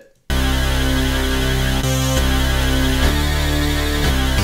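Layered Ableton Wavetable bass synth patch playing sustained notes that change about once a second, after a brief silence at the start. It is two Wavetable instances in parallel, the second detuned by a few cents and transposed an octave up, which thickens and widens the sound.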